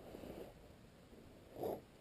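Faint rustling of riding gear close to the microphone, with one short, soft sound near the end.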